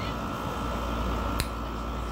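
Steady background hum and hiss of room noise, with a single sharp click about a second and a half in.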